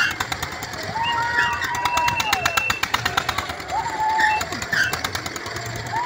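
Fairground ride machinery running with a fast, steady clatter and a low hum, while riders let out two long, high screams that rise and then fall away.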